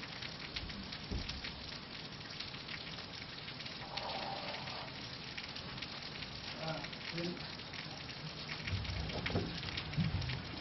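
A steady crackling hiss with many fine clicks, and faint murmured voices about four seconds in and again near the end.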